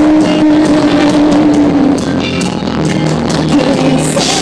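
Live rock band playing loud, heard from the audience: a long held note for about two seconds over guitars and drum hits.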